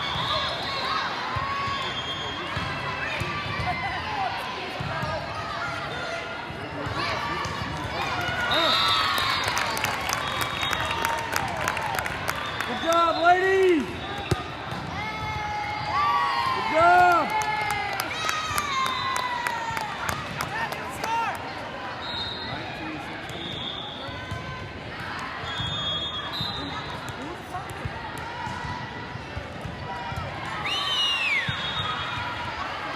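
Indoor volleyball play in a large, echoing hall: athletic shoes squeaking on the court floor, the ball being struck, and players and spectators calling out, with two loud outbursts in the middle. Short whistle blasts sound from around the hall.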